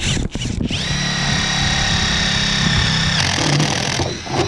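Cordless drill with a three-quarter-inch paddle bit boring through the plastic wall of a 55-gallon drum: a steady motor whine starting just under a second in. The even whine breaks off near the end into a rougher sound as the hole is finished.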